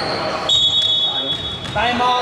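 Referee's whistle blown in one long steady blast of just over a second, stopping play for a time-out.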